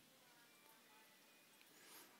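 Near silence: faint outdoor background with a few scattered faint high tones.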